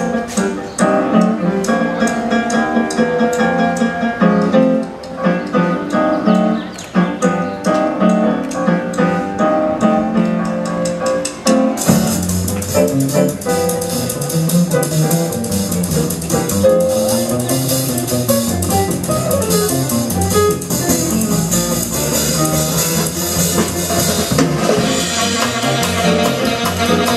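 Jazz big band playing a swing tune: piano, guitar, upright bass and drums keep time, and about halfway through the full band with saxophones and brass comes in, fuller and brighter.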